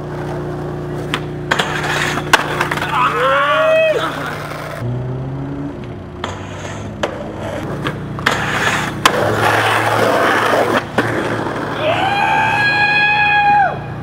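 Skateboard wheels rolling on asphalt with sharp clacks from the board's tail pops and landings, over a steady low hum. A person gives a short shout a few seconds in and a long yell near the end.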